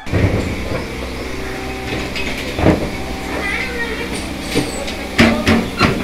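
An engine idles steadily while metal and plastic milk cans are loaded onto a small pickup truck. Several clanks and knocks of the cans sound, with a cluster of them near the end.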